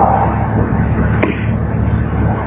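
Steady hiss with a low hum: the background noise of a speech recording between a man's phrases, with one sharp click a little over a second in.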